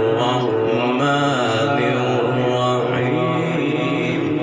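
A man reciting the Qur'an in melodic tajweed style through a microphone, in one unbroken line with long held notes and ornamental glides.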